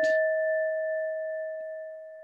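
A single electronic chime tone rings on and slowly fades away, struck just before. It is the alert of the witnesses' speaking timer.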